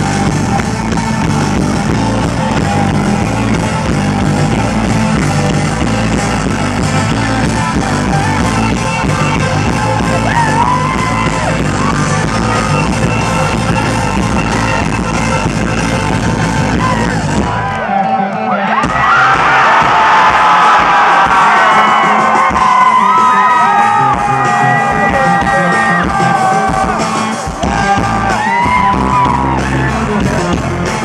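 Live rock band playing through a PA, heard from within the crowd, with singing over guitars, keyboards, bass and drums. About eighteen seconds in the bass and drums drop away, leaving voices and higher parts, and the low end comes back only in patches near the end.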